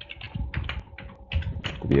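Computer keyboard being typed on, a quick run of about a dozen short key clicks as a word is entered.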